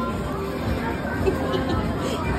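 Busy arcade background: indistinct voices and chatter mixed with electronic game-machine sounds.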